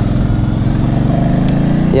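Ducati Hypermotard's V-twin engine pulling under throttle, its pitch rising slowly and its level climbing as the bike accelerates.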